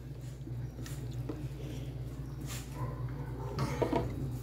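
A spoon spreading thick cream over a chocolate layer in a glass dish: a few faint, soft squishing and scraping strokes over a low steady hum.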